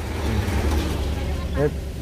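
Light cargo truck driving past, its engine and tyre rumble swelling and then fading away within about a second and a half.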